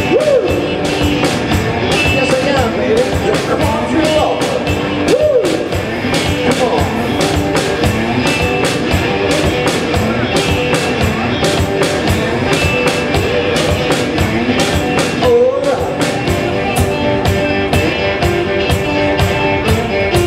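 One-man band playing blues-rock: electric guitar through an amplifier, with several string bends that rise and fall back, over a steady beat on kick drum and cymbals played by the same performer.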